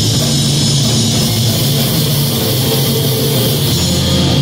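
Live thrash metal band playing loudly: distorted electric guitars, bass and drum kit in a dense, unbroken wall of sound, heard from the audience.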